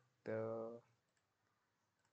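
A man's voice holding a drawn-out "the…", then near silence with one faint click about a second in.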